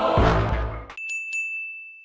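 Intro music with a deep bass stops abruptly about halfway through, and a subscribe-bell notification sound effect follows: two quick, bright dings over a steady high ring.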